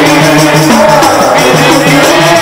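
Qaswida: men's amplified voices singing a devotional melody into microphones, with a steady rattling percussion rhythm beneath.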